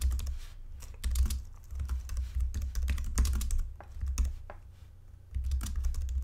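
Typing on a computer keyboard: a fast run of keystrokes, with a brief pause a little before the end.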